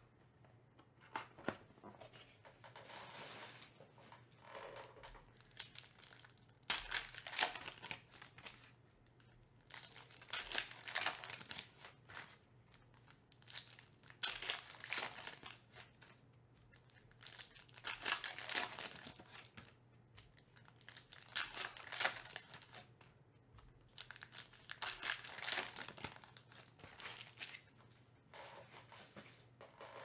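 Foil trading-card pack wrappers being torn open and crinkled, in repeated bursts every few seconds, with cards handled in between.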